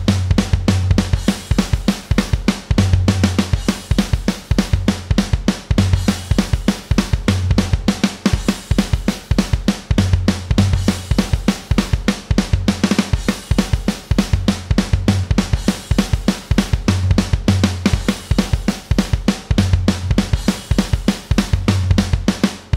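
MIDI-programmed rock drum kit from a software drum instrument, playing a looping beat of kick, snare, hi-hat and cymbals. Random note chance and velocity range make the hits vary a little from pass to pass, for a more human feel.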